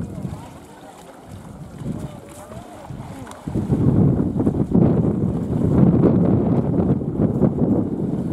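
Wind buffeting the microphone, becoming loud about three and a half seconds in, over faint distant voices of a crowd.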